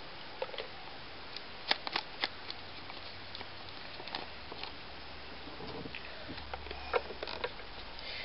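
Scattered light clicks and taps of small craft items being handled and set down on a cluttered table, over faint room hiss.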